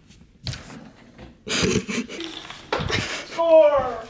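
A light knock about half a second in, then breathy bursts of laughter and a short vocal sound that falls in pitch near the end.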